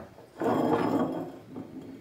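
Glass bottle spinning on its side on a wooden tabletop: a rolling, scraping rumble that starts about half a second in and dies away as the bottle slows.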